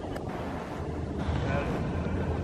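Wind buffeting the microphone: a steady low rumbling noise with no distinct events.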